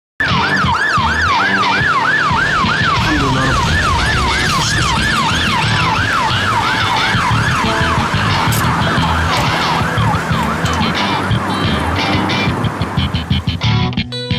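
Ambulance siren wailing fast, its pitch going up and down about twice a second, fading out near the end.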